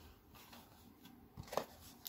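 Faint handling noise as a large eyeshadow palette is picked up and moved, with a couple of soft knocks about one and a half seconds in.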